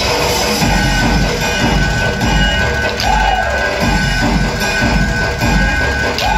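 Loud dance music with a heavy bass beat, played for a dandiya (tipri) stick dance, with a swooping tone that rises and falls about halfway through.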